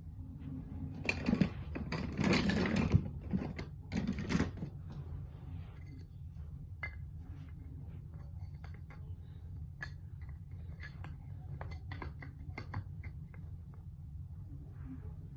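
Toy train track pieces being handled: a burst of clattering rummaging in the first few seconds, then scattered light clicks and taps as pieces are picked up and fitted together.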